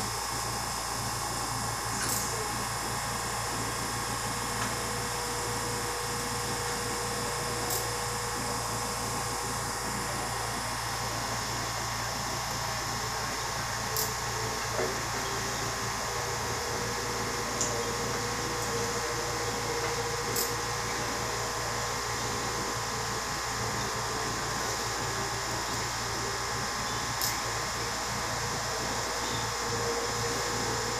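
Powered dental instrument running steadily in the patient's mouth, a continuous whine and hiss with a few faint clicks.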